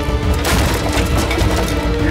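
A sudden crash about half a second in, followed by scattered clatter, over background music.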